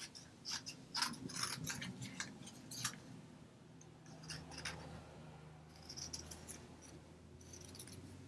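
Small scissors snipping through a strip of stamped paper: a quick run of short snips in the first few seconds, then a pause and a few more cuts later on.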